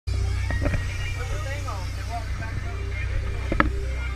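Sportfishing boat's engines running with a steady low drone while trolling, with a few sharp knocks about half a second in and again near the end.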